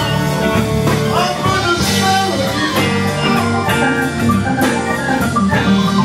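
A live blues-rock band playing an instrumental passage without singing, with sustained melodic lines over bass and drums.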